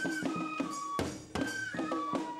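Japanese festival hayashi music for a shishimai lion dance: a high bamboo flute holds and steps between notes over irregular drum strikes a few tenths of a second apart.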